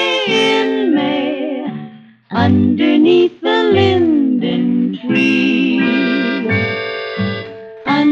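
A 1949 vocal-pop recording with orchestra, played from a restored 78 rpm record: sustained close-harmony notes with vibrato, with a short break about two seconds in.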